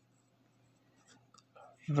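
Ballpoint pen scratching faintly on paper as a word is handwritten, with a few light ticks of the pen tip in the middle.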